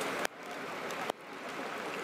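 Steady rain falling on a wet street, an even hiss. About a quarter second in and again just after a second there is a sharp click, each followed by a sudden dip in the level.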